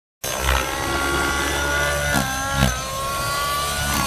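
GAUI NX7 electric RC helicopter in 3D flight: a high motor and gear whine with rotor noise, its pitch wavering and sliding as head speed and load change, with a few low thuds.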